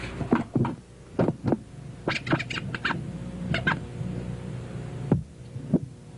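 A vinyl record being scratched back and forth on a turntable through a DJ mixer: short, scattered strokes in small groups, over a steady low hum.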